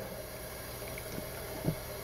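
Cold water from a kitchen tap running into a metal pan holding dry joint compound powder, a steady quiet splashing flow, with a couple of faint light knocks in the second half.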